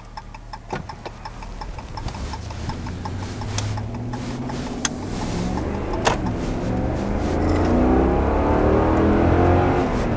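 Ram truck's Jasper-rebuilt 5.7 Hemi V8 accelerating hard from a pull-out, heard from inside the cab: the revs climb, drop back at an upshift about six to seven seconds in, then climb again, growing louder toward the end. A steady light ticking stops about three seconds in.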